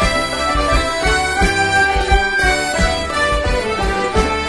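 English folk session band of melodeons, fiddles, tin whistle, banjo, mandolin, guitars and cello playing a Morris dance tune in unison, with a steady beat underneath.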